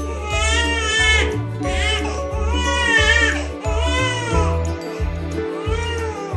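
Newborn baby crying in a run of short wails, about one a second, each rising and then falling in pitch.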